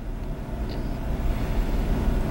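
A steady low rumble with no speech.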